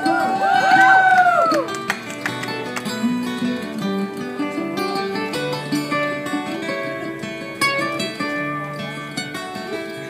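Live acoustic string band playing an instrumental break: plucked mandolin and strummed acoustic guitar over a walking upright bass line. A sung note is held and tails off in the first two seconds.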